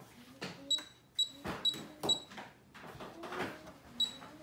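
Miele KM5975 induction cooktop's touch controls beeping: four short high beeps about half a second apart, then one more near the end, each press of the plus key stepping the cooking zone's power level up.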